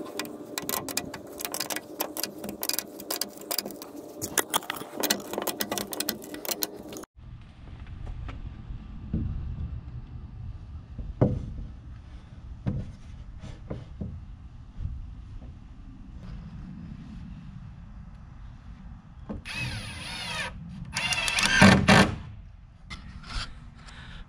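A ratchet wrench clicking rapidly as nuts are tightened onto the door's carriage bolts, cut off suddenly about seven seconds in. A few knocks follow as a wooden brace is set against the door boards. Near the end come two short bursts of a cordless drill driving screws to tack the brace in place.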